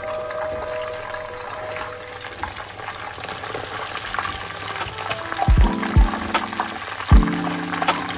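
Whole fish shallow-frying in hot oil in a pan, a steady sizzle. Background music plays over it and comes in with heavy bass beats about five and a half seconds in.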